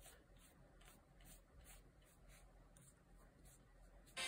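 Faint, soft swishes of a paintbrush stroking wet paint across paper, about three strokes a second.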